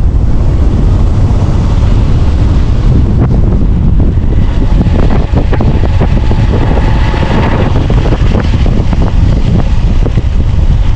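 Heavy wind buffeting the microphone on a moving motorcycle, with the small motorcycle's engine running underneath as it rides along a dirt road.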